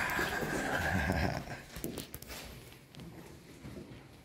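Footsteps of people walking on a cave walkway, with a brief loud noisy burst in the first second and a half, then only a few faint steps and knocks.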